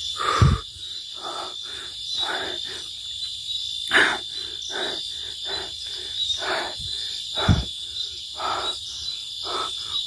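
A steady, high chorus of night insects such as crickets, with footsteps on a dirt and leaf-litter forest path about twice a second as a person walks quickly. There is a sharp crack about four seconds in, and two low thumps, one near the start and one about three-quarters of the way through.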